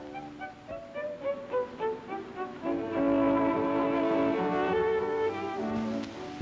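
Orchestral film score led by violins: a line of short notes, then a louder sustained string chord from about halfway in.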